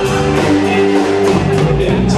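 Live band playing an instrumental passage of a slow ballad, with held chords and drums.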